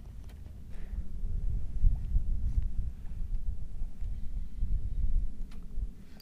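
Wind buffeting the camera microphone: a low, uneven rumble that rises and falls, with a few faint ticks.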